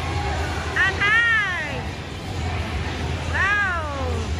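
Children's high-pitched cries: two drawn-out calls, one about a second in and one near the end, each rising then falling in pitch. A steady low hum runs underneath.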